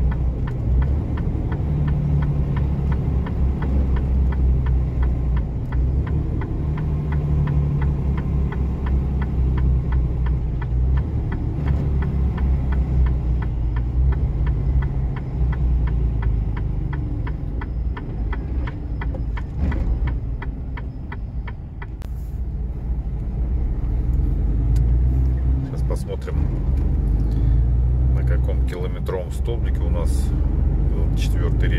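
Heavy truck's diesel engine and road noise heard from inside the cab, a steady low rumble as the truck rolls slowly toward a stop. A fast, faint ticking runs over it for most of the first two-thirds.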